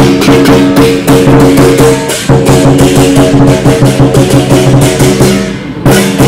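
Lion dance percussion: a drum beaten in a fast, steady rhythm with cymbals and a ringing gong, loud throughout, easing briefly just before the end.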